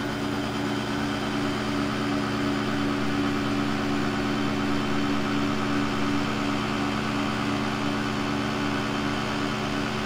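Engine lathe running steadily while an insert tool takes a facing cut across the raised face of a steel pipe flange, a constant machine hum under the sound of the cut.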